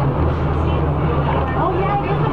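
Neoplan AN440 city bus's diesel engine running steadily, heard from inside the cabin, with people's voices talking over it.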